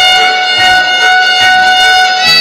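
A child's small violin holding one long bowed note, steady in pitch, with bright overtones.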